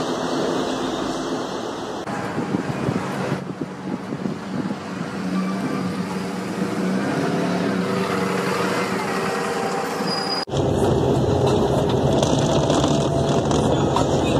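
Street traffic with a bus engine running close by, its pitch wavering. About ten and a half seconds in the sound cuts abruptly to the louder, steady engine and road rumble inside a crowded minibus.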